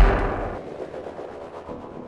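A deep, booming hit at the start, fading out over about a second and a half: the impact of an intro sting.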